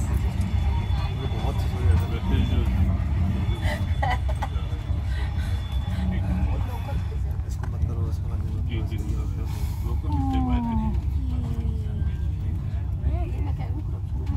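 Low, steady rumble of a passenger train moving off, heard from inside the carriage, with faint voices in the background.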